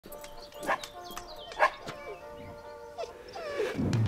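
A dog barking twice, about a second apart, over music with long held notes. A low rumble comes in near the end.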